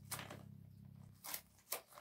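Small paperboard box being opened by hand: faint scraping and rustling of cardboard, with a few short scratchy sounds, one near the start and two more in the second half.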